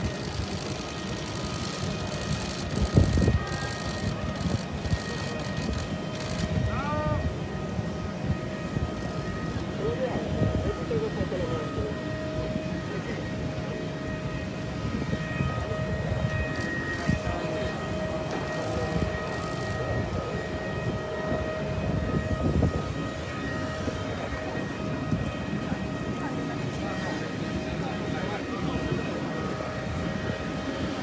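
Jet aircraft running on the ground: a steady high whine over a low rumble.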